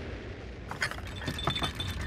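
Low rumble of a cartoon rocket heading home, with china teacups and saucers on a tea tray starting to rattle and clink about a second in.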